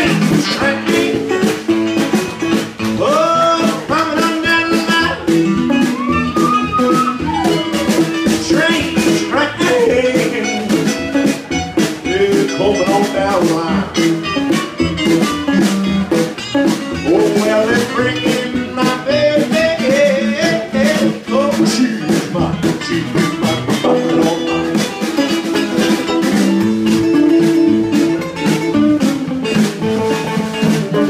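Live band playing an instrumental break: an electric guitar plays a lead line with bent, sliding notes over strummed acoustic guitar and a snare drum keeping the beat.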